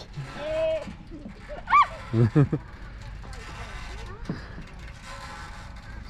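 Voices on a playground swing: a short vocal sound near the start, a high squeal about two seconds in, then a few short laughs. The second half is quieter outdoor background noise.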